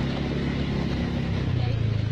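Motorbike engine running under way, with steady wind and road noise on the microphone; about a second and a half in, the engine note steps up and grows louder.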